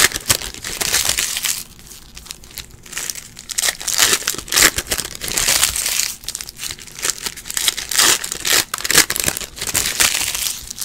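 Foil trading-card pack wrappers crinkling in irregular bursts as they are handled and torn open by hand, with cards shuffled between them.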